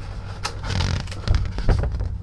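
Handling noise from a sheet of paper being held up and moved about: a brief rustle about a second in, then a few soft clicks and low knocks, over a low rumble.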